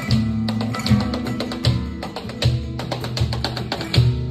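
Live flamenco music: an acoustic flamenco guitar playing, with sharp percussive accents falling about every three quarters of a second.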